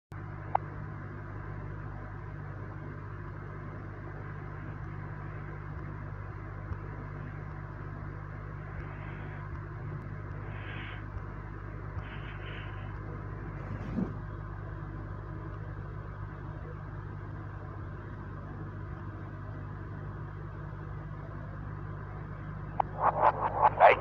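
Steady low electrical hum and hiss, with a sharp click about half a second in and a soft thump around the middle. A louder, busier sound starts just before the end.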